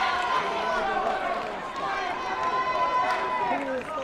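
Overlapping voices of a crowd shouting and calling out in a sports hall, several at once, with a long held call about two and a half seconds in.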